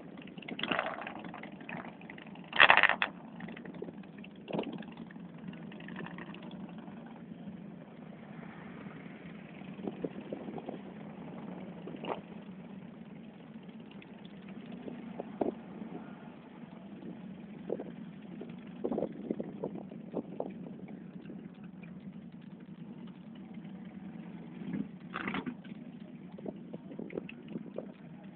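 An engine idling steadily, with scattered short knocks and one loud, brief clatter about three seconds in.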